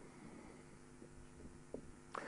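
Near silence: room tone with a faint steady hum and a small tick near the end.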